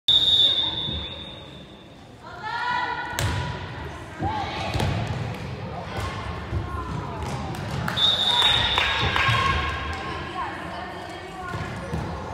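Referee's whistle blowing for the serve, then the volleyball smacked by the server about three seconds in and a few more hits during the rally, with spectators' voices calling out. The whistle blows again about eight seconds in, ending the rally.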